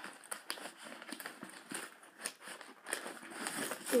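Hands rummaging in a backpack, papers rustling and crinkling as homework sheets are pulled out, in an irregular run of scrapes and small clicks.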